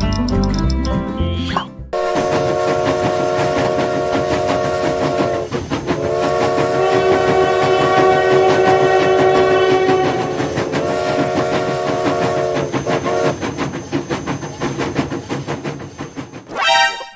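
Music for the first two seconds, then a train whistle sounding in three long held blasts, one after another, over a rapid chugging clatter. The whistle stops about two-thirds of the way through and the clatter goes on.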